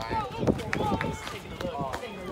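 Several people's voices talking and calling out, unclear as words, with a few short sharp clicks among them.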